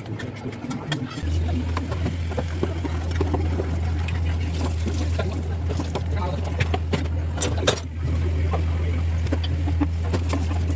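A metal spoon stirs and scrapes sugar syrup boiling in a pan on a gas stove, giving scattered clicks and scrapes. Under it a steady low hum sets in about a second in.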